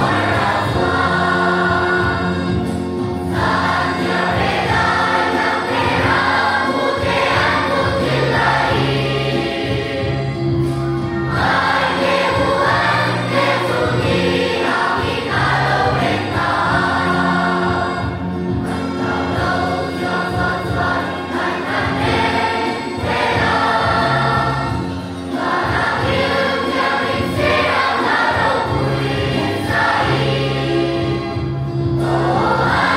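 Children's choir singing a carol together, accompanied by an electronic keyboard holding steady low notes under the voices.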